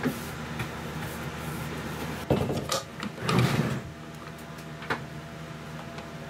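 Wood lathe's tailstock and live center being handled and brought up against a cherry platter: a sharp metal knock about two seconds in, a short scraping slide, and another click near five seconds, over a steady low hum.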